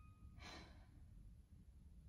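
A female singer's short, faint breath, drawn in about half a second in, between sung phrases. At the very start the last held note fades out; otherwise near silence with a low room hum.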